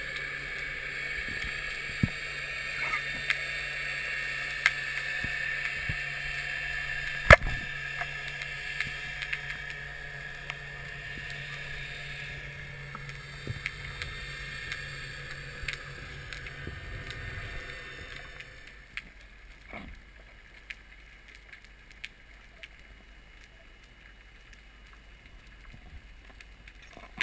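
Underwater ambience: a steady hiss and low hum with scattered sharp clicks, one louder click about seven seconds in. The hum and hiss fade out about eighteen seconds in, leaving quieter water with a few clicks.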